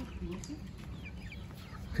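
Chickens clucking faintly, with a few short high chirps.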